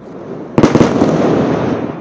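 A large explosion from an airstrike on a high-rise: a sharp blast about half a second in, followed by a long, heavy rumble that dies away near the end.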